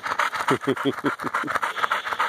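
Dog panting fast and steadily, about eight short breaths a second, with a man's brief low chuckle in the middle.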